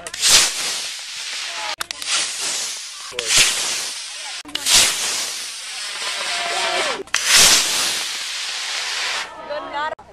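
Model rocket motors firing one after another, about four launches. Each is a sudden rushing hiss that fades over a second or two.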